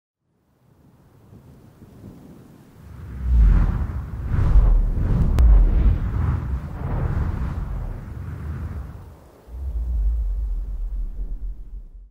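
Cinematic intro sound effects: a deep rumbling swell with several whooshes, building from about a second in and peaking around three to five seconds. It dips briefly, then a second low rumble comes in near nine and a half seconds.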